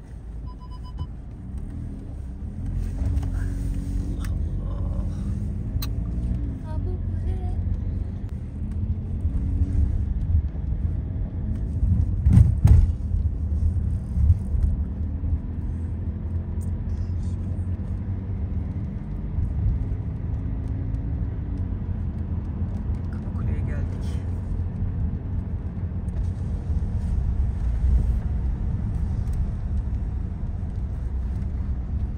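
Car cabin noise while driving slowly on a wet road: a steady low rumble of engine and tyres, with a louder thump a little under halfway through.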